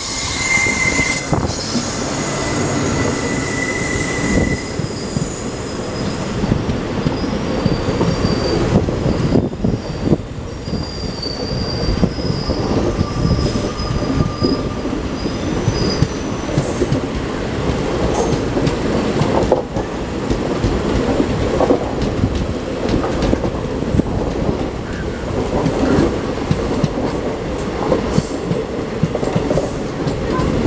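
Train wheels on rails heard at an open coach window: a steady rumble and clatter of wheels over rail joints as another train's coaches pass on the next track. Thin high wheel squeals come and go during the first half.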